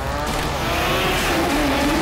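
Drag car engine revving hard, its pitch rising and falling.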